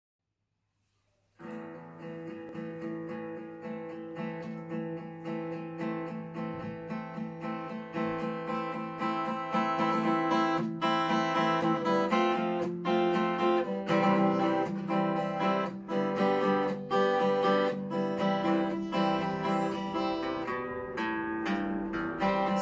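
Solo steel-string acoustic guitar playing a song intro with a steady rhythm. It starts about a second and a half in and grows gradually louder.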